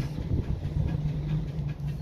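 A steady low mechanical hum, with faint scraping and tapping as a pencil is drawn along a steel rule on paper.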